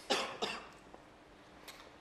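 A person coughing twice in quick succession, two short bursts about a third of a second apart. A faint click comes near the end.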